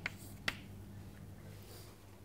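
Chalk striking a blackboard as a short letter is written: two sharp clicks in the first half second, over a faint steady electrical hum.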